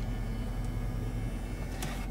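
Steady low hum inside the SUV's cabin, with a short click near the end.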